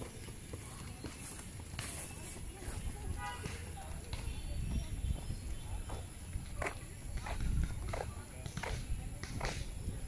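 Running footsteps on a rubberised running track, sharper and more regular from about halfway through, with a steady rumble of wind and handling on the moving phone's microphone.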